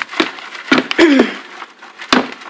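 A plastic-rimmed wire-mesh sifting screen shaken by hand, worm castings rattling and scraping across the mesh, with several sharp knocks of the sifter frame.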